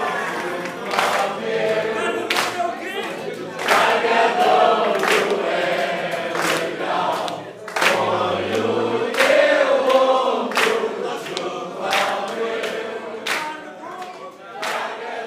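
A crowd of voices singing together in long held lines, with a sharp percussive hit about every second and a half keeping the beat.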